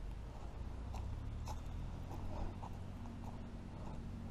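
Footsteps on a sandy, leaf-strewn path, as faint irregular crunches over a low rumble on the microphone.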